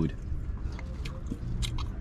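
People chewing and biting into Italian beef sandwiches, a scatter of small mouth clicks and soft crunches over a steady low hum.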